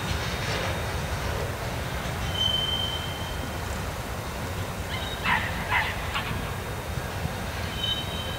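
Freight train of open-top hopper cars rolling away down the track, a steady low rumble. A brief high-pitched wheel squeal comes about two seconds in and again near the end, with a few short sharp sounds about five seconds in.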